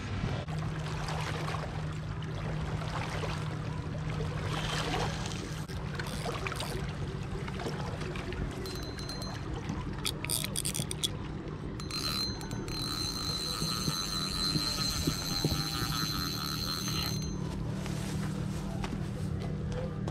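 A passing boat's motor running as a steady low hum. About ten seconds in there is a quick run of clicks from the spinning reel being set, followed by a high steady tone that lasts several seconds and cuts off suddenly.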